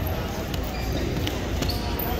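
Wrestlers scuffling on a gym mat: a few short sharp knocks over steady background chatter in a large hall.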